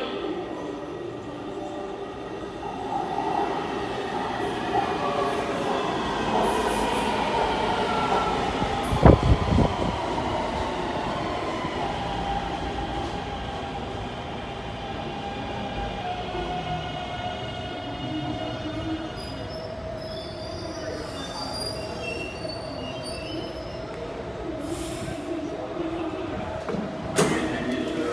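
Taipei Metro C321 train braking into a station: its motor whine falls steadily in pitch over about a dozen seconds over rumbling wheels, with a heavy thump about nine seconds in. It then stands with a steady hum, and near the end there is a clunk as the doors open.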